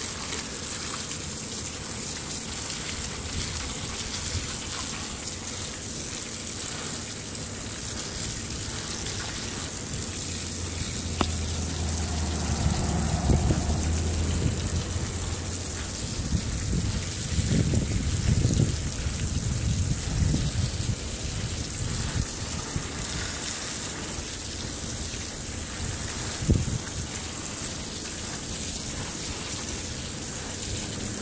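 Steady spray of a water jet hitting lumps of native copper on a wire-mesh screen, washing off the residue of processing to reveal the copper. Some low rumbles and thumps come through in the middle stretch.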